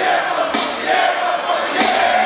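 Hip-hop concert crowd shouting and chanting while the beat's bass drops out, with voices over the PA and two sharp hits, about half a second in and near the end.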